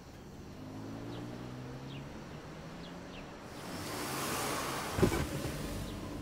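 Inside a parked car: an engine hum and then a passing car's swell and fade from the street, followed about five seconds in by a sharp thump of the car door shutting as someone gets in.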